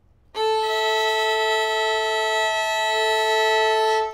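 Violin bowing a sustained double stop on the open A and E strings, the A sounding a moment before the E joins. The E string is quite out of tune, so the fifth is dissonant, with a fast wavering 'wah, wah, wah' beat.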